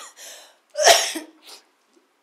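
A woman laughing close into a handheld microphone in short breathy bursts, the loudest about a second in.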